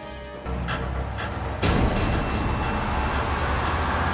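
Movie soundtrack: music mixed with vehicle rumble and traffic noise, which gets suddenly louder about a second and a half in.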